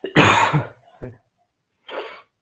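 A person coughing close to the microphone: one loud cough, then a short one about a second in and another near the end.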